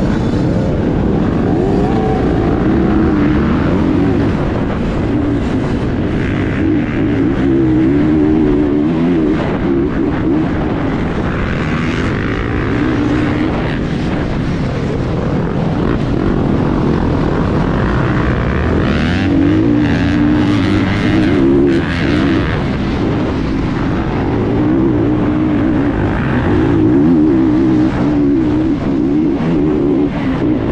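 Off-road motorcycle engines: the rider's own dirt bike revving up and down through the gears, with other dirt bikes running close around it in a crowded race start, heard from a helmet-mounted camera.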